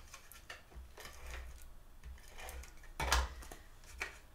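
Double-sided tape runner laying adhesive on cardstock: faint ticking and clicking, with a louder, short stroke about three seconds in, among light paper handling.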